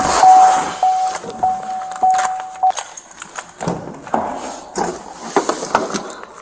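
A vehicle's electronic warning chime sounding one steady tone, broken by brief gaps about every half second, that stops a little under three seconds in. Around it are rustling and knocks of someone moving about in a car and working its doors.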